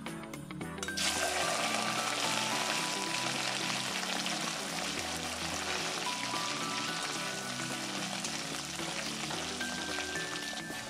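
Sliced food dropped into hot oil in a kadai, setting off a sudden loud sizzle about a second in that goes on as a steady, vigorous deep-frying crackle while it is stirred with a slotted spoon.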